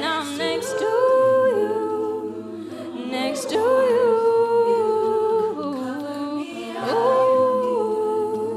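A cappella vocal group singing: a female soloist sings three long held notes, each sliding up into pitch, over the group's sustained wordless backing chords and a low sung bass line.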